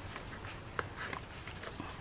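Faint paper handling: a paper card being slid gently into a paper pocket of a handmade journal, a soft rustle with a couple of light ticks near the middle.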